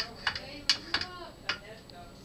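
About five sharp clinks of a metal fork or serving spoon against a plate as food is scooped and served, irregularly spaced.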